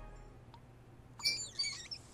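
A chrome single-lever shower valve handle squeaking as it is turned: two short, high squeals a little over a second in.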